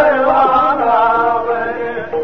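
A voice chanting a melody over steady held instrumental notes.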